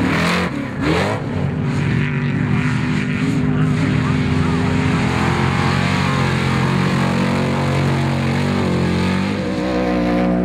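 Trophy truck engines at race speed. In the first second or so the pitch rises and falls quickly, then it holds a steady drone as a truck runs past.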